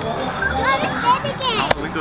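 Children shouting and chattering at play, their high voices rising and falling over one another.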